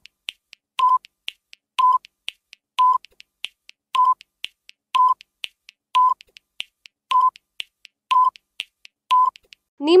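Quiz countdown timer sound effect: a short beep of one steady pitch about once a second, nine in all, with quick sharp ticks between the beeps.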